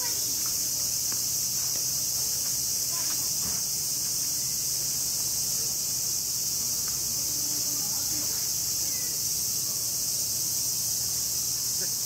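Cicadas buzzing in a steady, high-pitched chorus that does not let up, with faint distant voices beneath.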